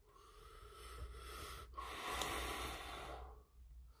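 A person breathing heavily close to the microphone: a quieter breath building over the first second and a half, then a louder one that fades out by about three and a half seconds in.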